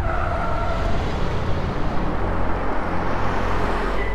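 A car driving, its engine and road noise a steady rumble that holds level, with a faint whine in the first second.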